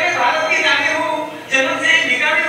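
A man's voice, speaking loudly into a microphone, played back over a hall's sound system.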